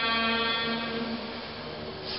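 A chanting voice holding one long note in a Buddhist chant, slowly fading toward the end.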